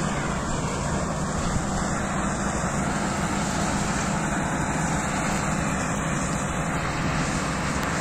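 New Holland combine harvester running as it cuts grain: a steady, even engine drone with no change in pace.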